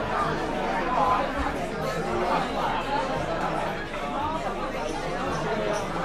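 Pub chatter: several men's voices talking over one another in overlapping conversation.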